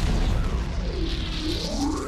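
Film sound effects over orchestral music: a sudden boom at the start, then a whooshing effect whose pitch falls and rises again in the second half.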